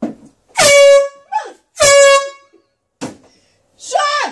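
Two loud blasts of a handheld air horn, each about half a second long and held at one steady pitch. A woman's startled shriek follows near the end.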